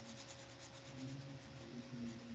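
Faint room tone with a thin, steady hum and a little faint rustling; no clear sound event.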